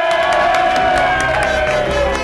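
A crowd cheering and shouting, with one long held shout carrying over it that trails off near the end.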